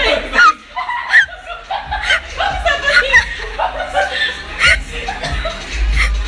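Several people laughing and chattering excitedly together, with short high-pitched whoops and shrieks breaking in.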